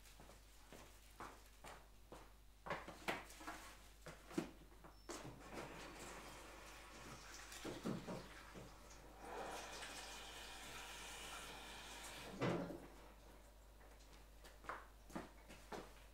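Faint knocks and clicks of objects being handled, with a few seconds of steady rushing noise in the middle that ends with a louder knock.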